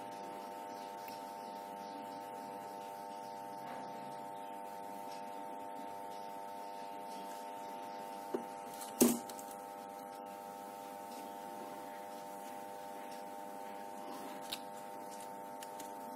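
Faint steady hum made of several held tones, under the quiet handling of quilling paper and a plastic glue bottle on a wooden table, with two sharp taps a little past halfway and a lighter one later.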